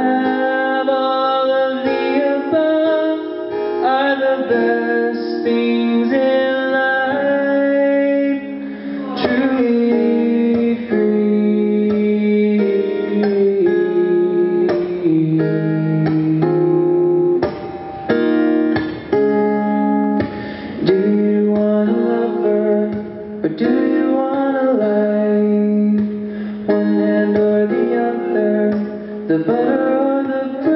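Live solo acoustic guitar with a man singing over it, the guitar holding a steady low note beneath a shifting melody.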